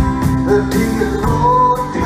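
Live country band playing a song: acoustic guitar, keyboard and drum kit, with a male singer on microphone.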